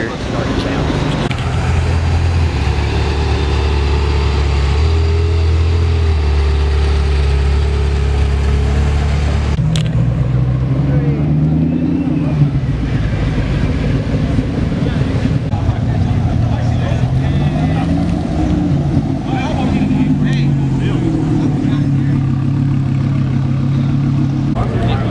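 Car engines at low speed: a steady low engine note for about the first ten seconds, then an engine revved and eased off several times, its pitch rising and falling, as a Ford GT's supercharged V8 moves off.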